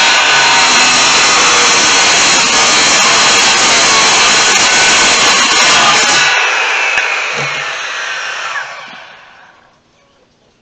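Corded DeWalt circular saw running loud as it cuts through a wooden board; about six seconds in the blade clears the wood and the motor is let go, its whine falling as it winds down and fades out near the end.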